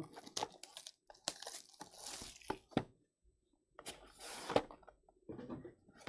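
Plastic shrink wrap being torn and crinkled off a sealed trading-card box, then the cardboard box being opened, in irregular rips and clicks with a short pause about halfway through.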